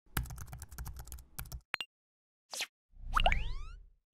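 Animated-graphics sound effects: a quick run of keyboard-typing clicks, a couple of single plops, then a rising swoosh near the end.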